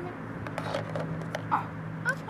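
Light clicks and scrapes of plastic sand toys being picked up and handled on grass, over a steady low hum.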